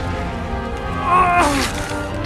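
An owl character's screech in the middle of a fight: one call about a second in, sliding down in pitch and ending in a short harsh rush, over film score music.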